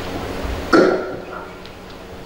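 A woman's single cough about three-quarters of a second in, close to the microphone, fading quickly. Before it there is a faint low rumble of a microphone being handled.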